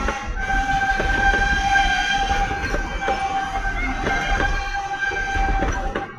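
Wooden passenger coaches of a steam train rolling past on the track, wheels clicking and knocking at irregular intervals over a low rumble, with a steady high-pitched tone above them.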